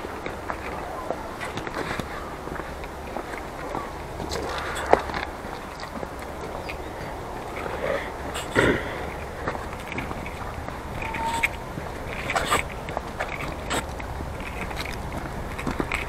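Footsteps of a person walking on an asphalt path, with scattered clicks and rustles of clothing against a body-worn camera, over a steady low hum.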